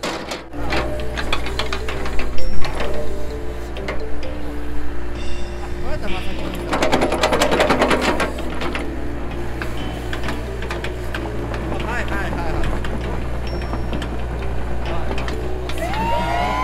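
Hitachi EX60 excavator's diesel engine running steadily under digging load, with knocks and scraping from the bucket working the soil; about seven seconds in, the digging noise grows louder for a couple of seconds.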